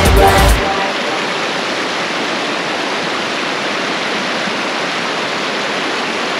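Pop song with a heavy beat cuts off about half a second in, then the steady rush of a shallow stream flowing over rocks.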